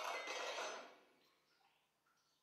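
A bulk milk tank's stainless-steel stick gauge being drawn up out of the milk and its seat, with a brief soft scrape that dies away within the first second.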